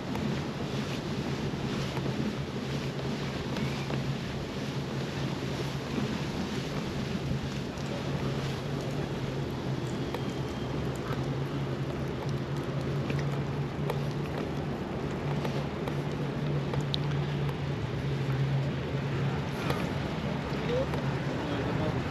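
Steady wind buffeting the microphone, with the rolling rumble of bicycle tyres on brick paving and a steady low hum.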